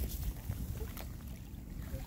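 Low wind rumble on the microphone, with a few faint crunching footsteps on a beach of crushed shells and pebbles.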